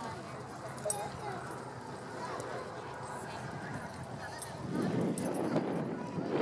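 Hoofbeats of a horse cantering on a sand arena, under faint chatter from people nearby. The sound grows louder near the end.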